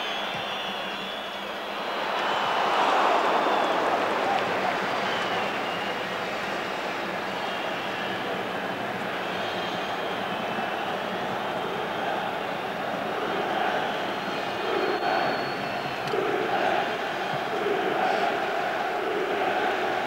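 Stadium crowd noise from a large football crowd, a steady roar that swells about two seconds in as play comes near the goal, with rhythmic chanting in the later seconds.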